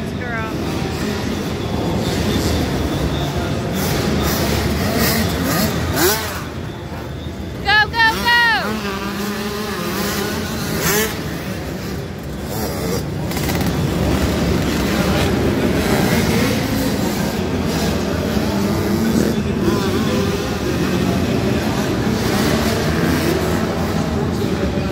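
Several dirt bike engines racing, revving up and down as the riders go through the jumps and corners, with a brief high rising-and-falling sound about eight seconds in.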